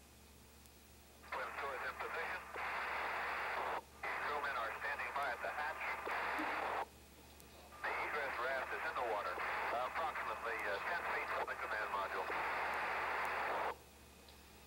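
Two-way radio transmissions: a narrow, hissy voice buried in static, keyed on and off. It comes in three stretches starting about a second in, with a break near the middle, and cuts off abruptly near the end.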